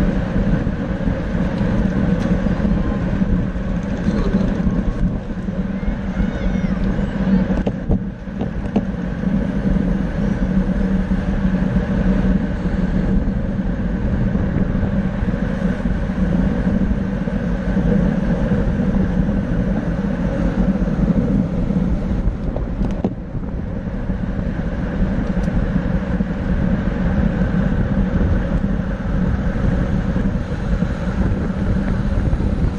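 Steady wind rush on a bicycle-mounted camera's microphone while riding in a racing pack at about 25 mph, briefly easing twice.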